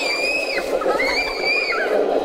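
Two long, high-pitched squeals, each held steady and then dipping at the end, over the chatter of a crowd.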